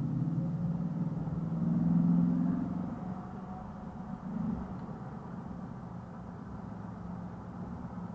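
Car engine and road drone heard from inside the cabin as the car accelerates from about 23 to 45 mph. It is loudest about two seconds in, then settles to a steady lower drone.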